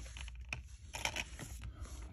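Crinkly plastic wrapping on a small insert package being handled and torn open by hand: a run of irregular crackles and sharp clicks.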